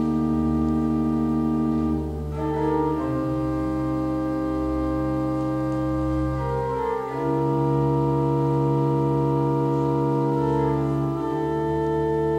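Pipe organ playing slow, sustained chords. The harmony moves to a new chord every few seconds, with a slight dip in level at each change.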